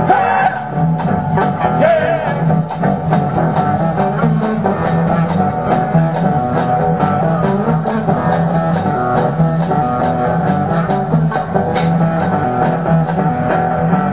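Live blues-rock band playing loud, with guitar over a drum kit keeping a steady, even beat.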